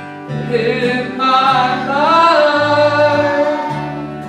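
Live country gospel song: singing with held notes that glide in pitch, over acoustic guitar and a walking line of low bass notes.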